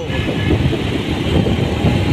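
Loud, steady road-traffic noise: vehicle engines running with a low rumble.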